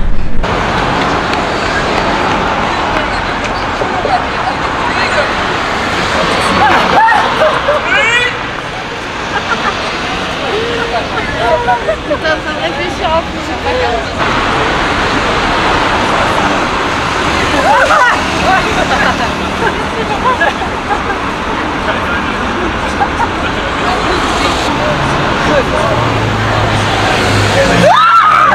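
Busy outdoor street ambience: steady road-traffic noise with scattered voices of passers-by, briefly broken about halfway through.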